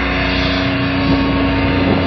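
Heavy metal band playing live through a festival PA: a sustained, distorted chord holding one steady low note, with no singing.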